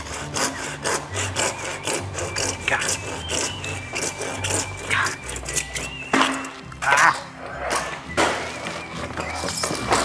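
A handsaw cutting through plastic 4-inch soil pipe in quick back-and-forth strokes, with background music.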